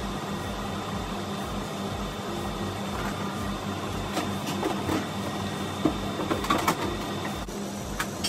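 Steady mechanical hum of commercial kitchen refrigeration equipment, with a faint high steady tone that stops near the end. A few light knocks and rustles come from containers being handled inside a reach-in refrigerator.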